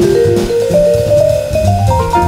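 Jazz quartet playing: a vibraphone line climbs upward note by note, over walking double bass and drum-kit cymbal work.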